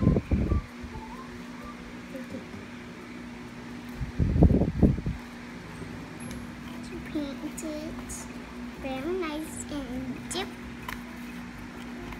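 A young child singing softly in a wavering voice over a steady low hum, with two loud low thumps: one at the start and one about four seconds in.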